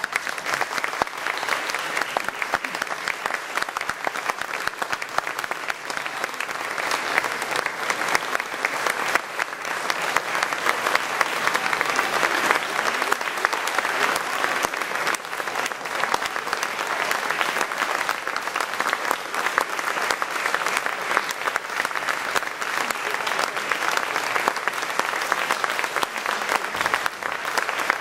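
Concert audience applauding steadily: dense hand-clapping from a hall full of people, with one pair of hands clapping close by.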